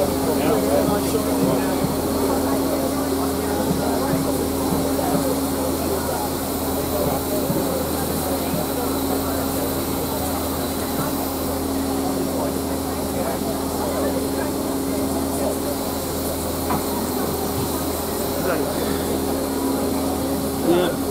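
Cab of LMS Jubilee class steam locomotive 45596 Bahamas standing with steam up. There is a continuous steady hiss and roar of steam and fire from the boiler backhead and open firebox, with a low steady hum and a steady tone underneath.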